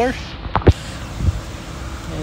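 A single short thump about half a second in, with a fainter knock a little later, over a steady low outdoor rumble.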